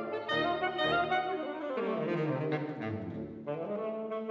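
Saxophone quartet of soprano, alto, tenor and baritone saxophones playing together. The lowest part walks downward through the middle, then the group settles into held chords near the end.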